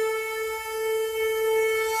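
A conch shell (shankh) blown in one long, steady, unwavering note, the opening sound of the title music.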